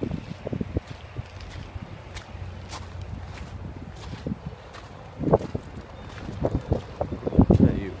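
Footsteps on gravel, with wind on the microphone making a steady low rumble.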